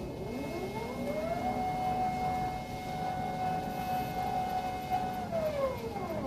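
Stepper motors of a 3D-printed Thor robot arm whining as the arm swings. The pitch rises over the first second and a half as the motors speed up, holds steady for about four seconds, then falls as they slow to a stop near the end.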